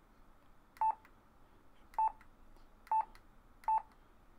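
Yaesu FT-817 transceiver's key beep: four short, identical beeps, about a second apart, as its front-panel buttons are pressed to switch the display to the power/SWR meter.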